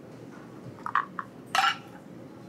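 Steady low room background with a few light clinks of a metal probe thermometer against a small saucepan, the loudest about a second and a half in.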